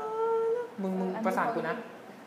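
A voice humming one steady held note, then a short wavering sung or spoken vocal phrase about a second in, demonstrating a melody by mouth.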